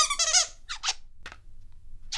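A loud, high squeak with a wavering pitch, lasting about half a second, followed by a few short raspy scraping strokes.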